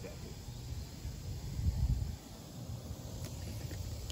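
Wind buffeting the microphone outdoors: an irregular low rumble with no steady tone, swelling briefly about a second and a half in.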